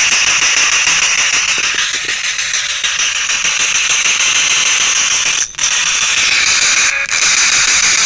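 Ghost box, a radio scanning rapidly through stations: a steady, loud wash of static that drops out briefly twice, about five and a half and seven seconds in.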